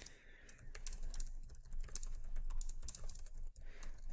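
Typing on a computer keyboard: a quick, irregular run of key clicks, several a second.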